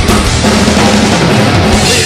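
Drum kit played hard along to a folk-metal band recording: fast bass drum, snare and cymbals over the full mix with bass notes.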